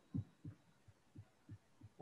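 Faint, soft low thumps, about seven in two seconds at irregular spacing, from a computer mouse being moved and handled on a desk while the cursor is searched for.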